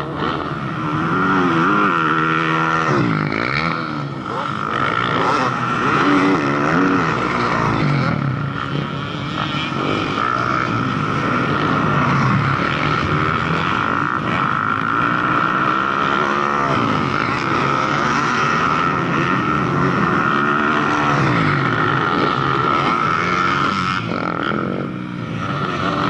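Motocross dirt bike engines running around the track, their pitch rising and falling again and again as riders rev and shift. A steady high whine runs underneath throughout.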